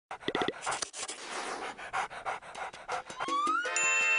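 A dog panting fast in an even rhythm. About three seconds in, music comes in with a rising tone that settles into a held chord.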